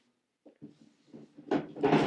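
Mostly a young man's voice, speaking in the second half. Before it is a near-silent moment with a few faint small knocks.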